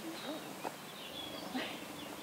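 Wild birds calling in the background: short high chirps and whistles, with a lower drawn-out note about a second in.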